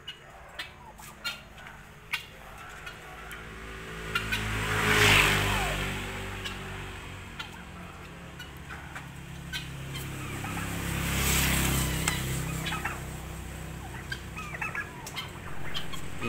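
Domestic turkey tom gobbling twice, about six seconds apart, over a low steady rumble.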